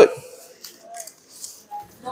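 The last of a man's spoken word, then a quiet room with a few faint, short rustles and taps.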